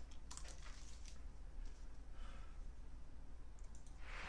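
Faint handling noise and clicks of over-ear headphones being picked up and put on, with a few sharp clicks about a third of a second in and a couple more near the end, over a low steady hum.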